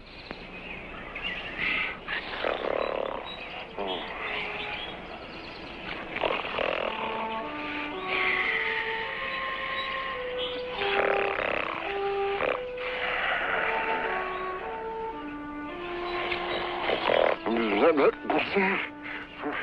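Film score playing a slow melody of single held notes, stepping up and down, over swamp wildlife calls that come and go every few seconds.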